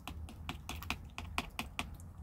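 A cat chewing dry food: a quick, uneven run of sharp little crunches, several a second.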